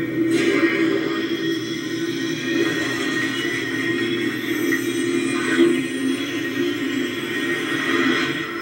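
Soundtrack of a sci-fi TV scene playing back through a computer's speakers: steady background music with held tones and little or no dialogue.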